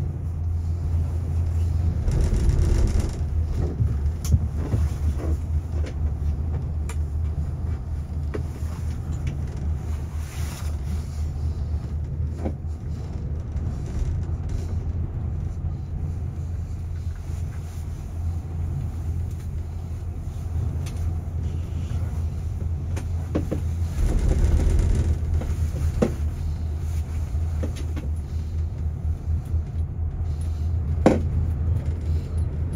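Steady low rumble and hum inside a moving gondola cabin as it rides the cable, growing louder about two seconds in and again near the end, with a few small sharp clicks.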